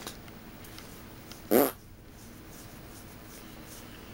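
A single short, loud vocal sound about a second and a half in, over a steady low hum.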